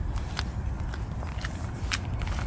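Footsteps on asphalt: a few soft, separate scuffs over a steady low rumble.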